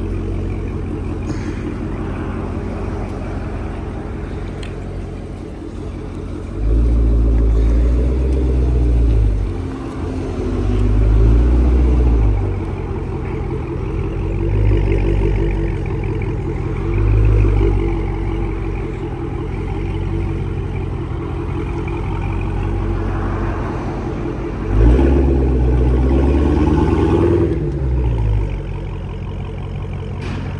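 The supercharged 6.2-litre HEMI V8 of a 2023 Dodge Charger SRT Hellcat Redeye Jailbreak, idling and blipped in about five revs, the first and last held for two to three seconds. It is heard with only the mid muffler deleted and the rear mufflers still in place: louder than stock.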